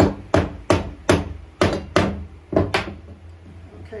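Rubber mallet tapping a fired clay ashtray, about eight quick knocks over roughly three seconds, trying to free a lid that has stuck fast to its base in the kiln. The pieces do not come apart.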